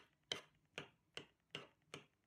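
Five faint, evenly spaced clicks, about two a second: a metal spoon knocking against a black serving dish while it mashes boiled egg and potato.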